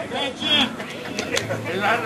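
Indistinct voices without clear words.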